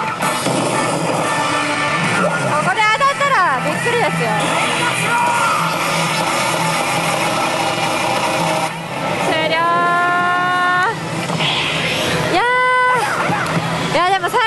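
Pachislot Hokuto no Ken Tensei no Shou slot machine playing its game music and voiced sound effects as an AT bonus run ends, over the steady din of the parlour. Near the end come a long held cry and a sharply rising one.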